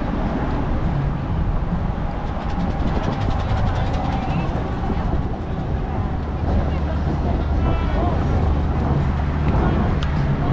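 Busy city street: chatter of a pedestrian crowd mixed with traffic noise. A steady low engine hum grows stronger about six seconds in.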